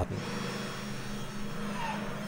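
Golf 7 rear electronic parking brake caliper motors running as pad-change mode is ended, driving the brake pistons back against the new pads: a steady electric motor whine with a faint high tone that falls slightly. This is the pistons re-adjusting, which is completely normal.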